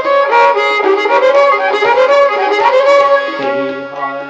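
Indian devotional music: a violin playing a sliding, ornamented melody over a steady sustained drone.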